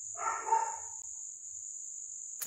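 Crickets chirping steadily as one continuous high trill. A short, unidentified sound, under a second long, comes near the start.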